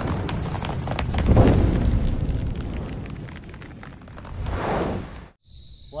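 Intro sound effect of booming, explosion-like whooshes with crackling: a deep swell about a second and a half in, crackles after it, and a second swell near the end that cuts off suddenly.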